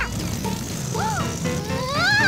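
Light children's background music. Over it, a short sliding pitch sound rises and falls about a second in, and a longer one rises toward the end.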